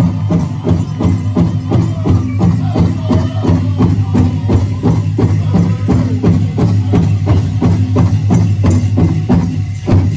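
Pow wow drum song: a big drum is struck in a steady beat of about three strokes a second while the singers' voices carry over it. The drumming stops just before the end.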